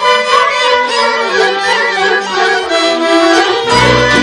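Romanian folk orchestra playing an instrumental passage, with violins carrying the melody over a light accompaniment; the bass and fuller accompaniment come back in just before the end.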